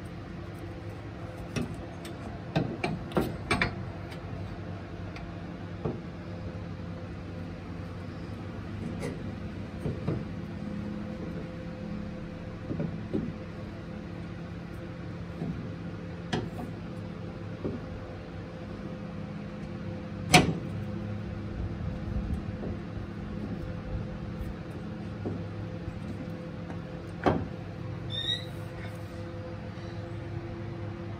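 Scattered knocks and clicks of a rubber air spring and its steel mounting bracket being worked into place under a truck frame. A cluster of knocks comes a few seconds in and the loudest single knock about twenty seconds in, all over a steady low hum.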